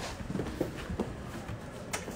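Shuffling and handling noise with scattered soft clicks, ending in a sharper click.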